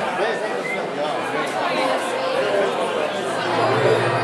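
Crowd chatter: many people talking at once in a large hall.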